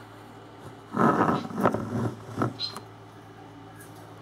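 An indistinct, muffled voice, heard briefly for about a second and a half starting a second in, over a steady low hum.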